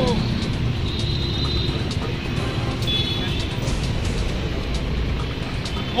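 Street ambience during a pause in crowd chanting: a steady low rumble of road traffic with faint voices in the background.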